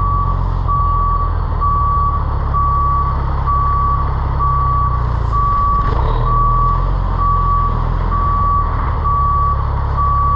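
Truck reversing alarm beeping about once a second in a single steady tone, over the WhiteGMC WG roll-off truck's diesel engine running.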